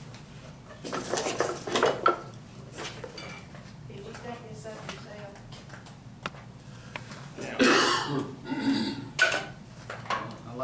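Metal hand tools clinking and clattering as they are picked up, handled and set down, in two clusters: one about a second in and a louder run of clatters near the end.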